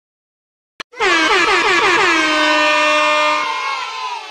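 Air horn sound effect: a single click, then about a second in a few quick falling blasts that run into one long held blast, easing off near the end.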